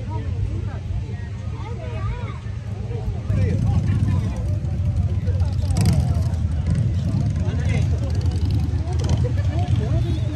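People chatting in the background over a steady low rumble, which gets louder about three seconds in.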